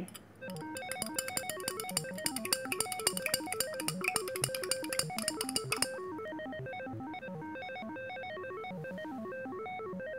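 Light background music of short, quick melodic notes, with a rapid ticking in the first half that stops about six seconds in.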